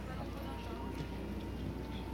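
A dressage horse's hoofbeats on sand arena footing, scattered knocks over a steady low hum.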